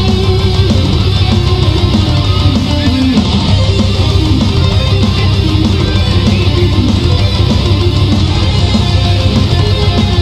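Instrumental passage of a heavy metal song: electric guitars and bass guitar playing, with no singing.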